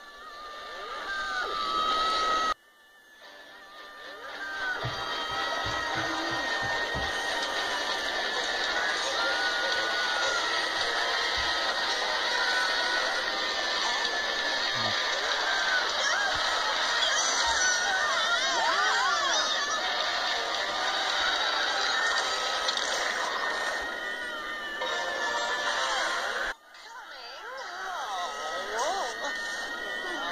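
Cartoon soundtrack played back through a screen's speaker: music with character voices mixed in. The sound breaks off abruptly twice, about two and a half seconds in and near the end, as one clip cuts to the next.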